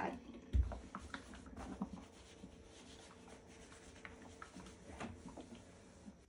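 Faint rubbing and rustling of a steam iron being pushed over cotton fabric on a table, with a soft low thump about half a second in.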